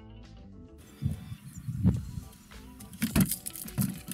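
Closing music ends under a second in, then outdoor sound with several low thumps, the loudest a sharp knock a little after three seconds.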